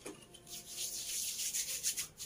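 Hands rubbing body lotion between the palms: a soft, hissy swishing in quick repeated strokes.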